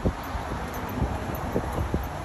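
Wind buffeting the microphone: a low rumble that surges in several short gusts.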